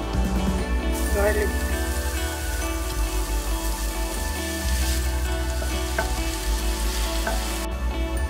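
Hot oil sizzling loudly as grated ginger is scraped into a pan of frying onions and stirred with a silicone spatula. The sizzle swells about a second in, when the ginger hits the oil, and cuts off abruptly near the end.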